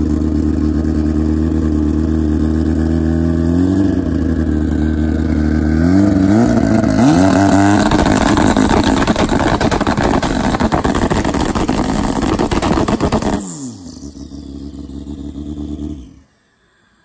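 Drag bike engine idling at the starting line, blipped twice, then held at high revs with a rapid crackle for about six seconds. It then falls back to idle without launching.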